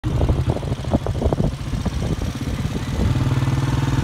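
A small engine running close by, uneven with knocks and pulses for the first three seconds, then settling into a steady idle.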